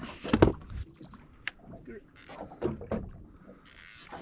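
Fishing gear being handled on a small boat: a sharp knock about half a second in, then quieter clicks and two short hisses, one about two seconds in and one near the end.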